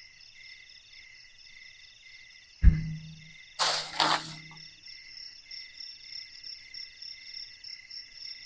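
Night insects chirping steadily in several pulsing high tones. A sharp thump comes a little over two and a half seconds in, then about a second later two short rustling noises.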